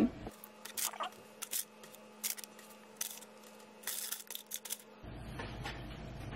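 Parchment paper crinkling and rustling as it is handled in an air fryer basket, in a handful of short crackles spread over the first five seconds.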